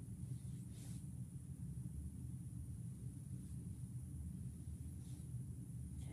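Low, steady room hum with a faint high whine, and two soft, brief swishes, about a second in and near the end, from a paintbrush stroking metallic paint onto a plastic egg.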